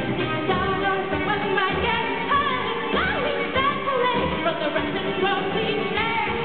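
Live pop-rock band performing: a woman sings over electric bass and keyboard, with a steady low pulse underneath.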